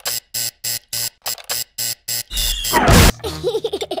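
A cartoon call-button sound chopped into a rapid stutter, about five short repeats a second for two seconds. It is followed by a loud, distorted noise burst with a falling whine, then a few short squeaky cartoon sounds.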